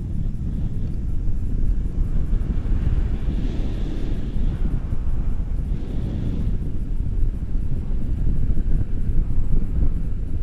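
Wind buffeting the microphone of a pole-mounted camera in tandem paraglider flight: a steady, low, gusting rumble that swells a little louder near the end.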